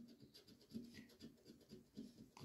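Faint scraping of a coin rubbing the coating off a scratch-off lottery ticket: a string of short, irregular scratching strokes.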